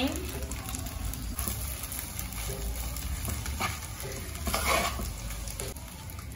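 Cooked spaghetti sautéing in oil in a pot on the stove: a steady sizzle, with a few brief louder stirring sounds about one and a half, three and a half and five seconds in.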